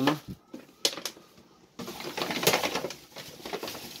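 Empty plastic bottles tossed into a plastic PMD rubbish bag: a few light knocks in the first second, then, about two seconds in, a stretch of crinkling and rustling of plastic that dies away.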